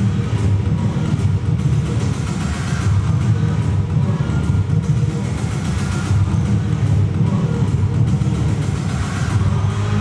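Backing music for the dance, dominated by a dense, steady low bass with fainter melodic tones above it.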